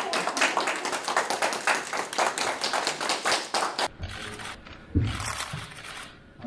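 A small group applauding in a room, with dense, continuous clapping. It breaks off about four seconds in, and a few scattered claps and a single dull thump follow.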